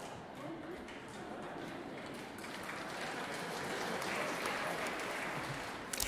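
Concert audience applauding softly, with murmuring voices mixed in, in a live concert-hall recording; the applause swells a little about halfway through.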